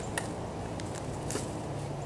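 Footsteps crunching on dry leaf litter, a few soft crackles over a steady low background rumble.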